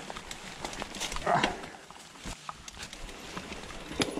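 Mountain bike riding over a dirt forest trail: irregular clicks and knocks from the bike rattling and the tyres running over stones and roots, with one louder, fuller sound about a second and a half in.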